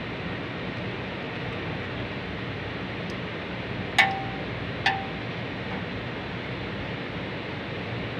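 Two sharp metallic clinks about a second apart, about halfway through, each ringing briefly, as metal hand tools knock against the sheet-metal casing of an air conditioner's outdoor unit. Under them is a steady rushing background noise.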